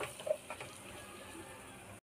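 A spatula scraping a few times through onion masala in a frying pan, then a faint steady sizzle of the frying masala.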